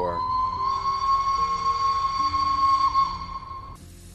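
Steam locomotive whistle: one long, steady blast at a single high pitch that cuts off suddenly near the end. It is the signal of the train pulling out.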